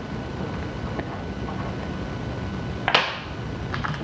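A single sharp click about three seconds in, a pen being set down on a hard tabletop, over a steady low background hum.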